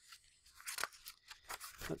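Pages of a paper booklet being handled and turned: a quick run of short, crisp paper rustles and clicks.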